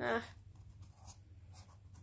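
Paint-marker tip dabbing and rubbing on cardboard as a small circle is coloured in: a few faint scratchy strokes.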